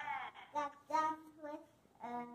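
A young girl singing a few short, high-pitched sung syllables, one held a little longer in the middle.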